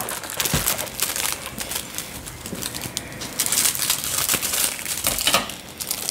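Foil Pop-Tarts wrapper being handled and opened, crinkling with a continuous run of small crackles.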